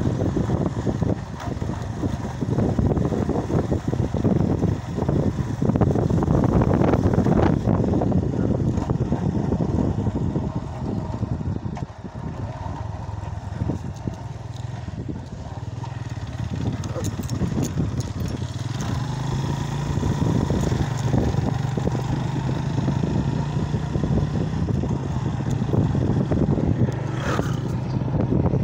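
Suzuki 150 motorcycle's single-cylinder engine running as it is ridden along a rough dirt track, with road noise. It dips for a few seconds about halfway, then settles into a steadier engine note.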